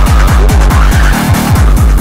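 Splittercore electronic music: a rapid, even train of distorted kick drums, each a downward pitch sweep, over harsh noisy mid-range distortion. About a second in the kicks briefly drop out under a buzzing tone, then resume.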